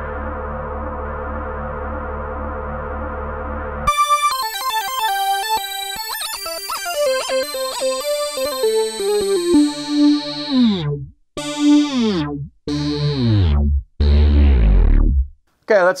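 Roland Juno-106 synthesizer in monophonic mode with portamento: a steady held tone for about four seconds, then a lead line whose notes glide into one another. The line steps down in pitch to low bass notes, with short breaks between the last few.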